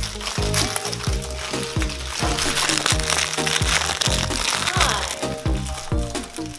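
Thin plastic snack-cake wrapper crinkling and crackling as it is pulled open by hand, over background music with a steady beat.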